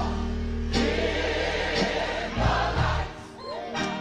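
Gospel music: a choir singing over a band with a steady beat and bass. The music thins out briefly a little after three seconds in, then comes back.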